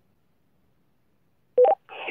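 Near silence, then near the end a short two-note electronic beep, a lower tone stepping to a higher one, from a two-way radio as a transmission keys up. A radio voice begins right after it.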